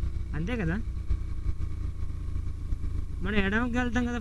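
A motorcycle is being ridden at a steady pace, its engine a low, even rumble under wind noise on the microphone. A man's voice speaks briefly just after the start and again from about three seconds in.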